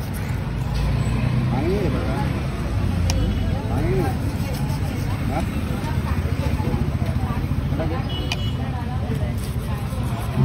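Busy street ambience: a steady low rumble of road traffic with people talking in the background.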